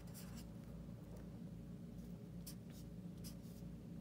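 Felt-tip marker writing on paper: a few short, faint strokes as a line and digits are drawn, over a low steady hum.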